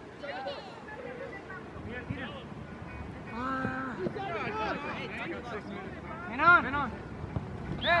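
Scattered distant shouts and calls of people around a soccer field, with one louder call about six and a half seconds in and a close shout of "ay" right at the end.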